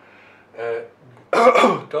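A man clearing his throat once, loudly, near the end, after a short voiced hesitation sound.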